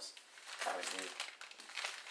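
Paper wrapping on a package of frozen meat crinkling as it is handled and turned in the hands.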